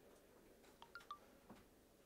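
Near silence with a few faint, short squeaks and light clicks about a second in: boxing shoes squeaking on the ring canvas as the fighters move.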